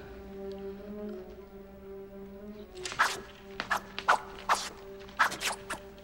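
Orchestral film score holding low sustained notes. About halfway through, a quick run of about eight sharp sword swishes and flicks comes in over some three seconds.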